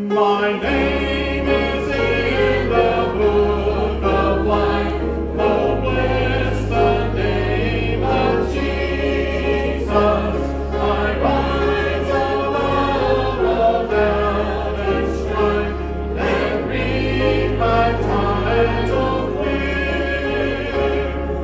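A congregation singing a gospel hymn with keyboard accompaniment that holds low bass notes under the voices. It starts about half a second in and goes on steadily.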